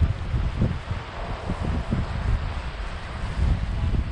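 Wind buffeting the microphone: an uneven, gusting low rumble over a steady hiss.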